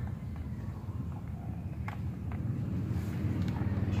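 Steady low background rumble with a few faint clicks as the oil filter cover is handled and pressed into place on the motorcycle engine case.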